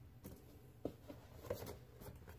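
Faint handling sounds: a few light taps and rustles as a speed stacking mat is lifted out of a cardboard box.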